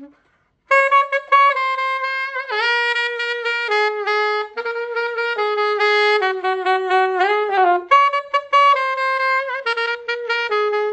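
A 1968 Selmer Mark VI alto saxophone played solo: after a short pause, a melodic line of held notes with a couple of scooped bends, then quicker short notes toward the end.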